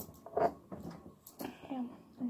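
Brief speech in a small room: a short vocal sound about half a second in and a spoken "yeah" near the end, with a faint click just before it.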